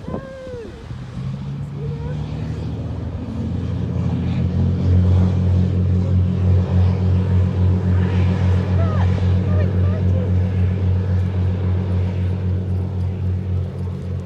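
Lifeboat's diesel engines under power as it heads out to sea, a low steady drone that builds over the first few seconds and then holds with a slight pulsing beat.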